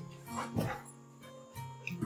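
A Rottweiler gives one short vocal sound about half a second in, over steady background guitar music.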